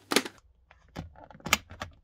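Plastic clicks from an Arai RX-7V Evo's visor and visor lock as a thumb swipes it up from locked down through its detents: a handful of short sharp clicks, most of them in the second half.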